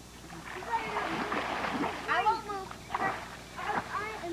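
Splashing of pool water as a child swims across, with a few short calls from voices over it about two and three seconds in.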